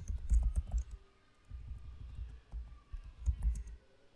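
Computer keyboard being typed on: a slow, uneven run of key clicks with dull low thuds, pausing briefly about a second in.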